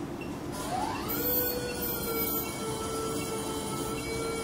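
Phacoemulsification machine's aspiration tone: about half a second in, a tone rises in pitch and then holds steady, with a lower steady tone beneath it, as vacuum builds while the handpiece aspirates superficial cortical lens matter.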